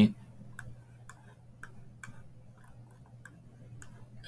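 Computer mouse clicking, about seven short separate clicks roughly every half second, over a faint steady low hum.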